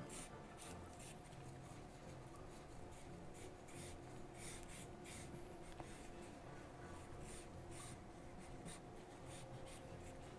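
Charcoal pencil drawing on paper: a faint string of short, irregular scratching strokes as lines are sketched in.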